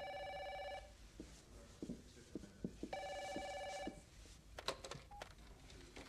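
Office desk telephone ringing twice with an electronic trilling ring, each ring about a second long and the second starting about three seconds after the first, followed by a few clicks as the handset is lifted from its cradle.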